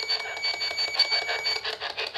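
PSB-11 spirit box sweeping through radio stations: a rapid chopping hiss of static, about eight to ten chops a second, with a high beep pulsing about four to five times a second that stops near the end.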